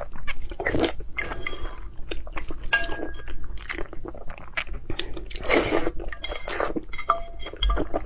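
Close-miked eating sounds: chewing of whole boiled eggs in chili oil sauce, wet mouth sounds in a run of short clicks and bursts, with a few light clinks of a spoon and chopsticks against the bowl.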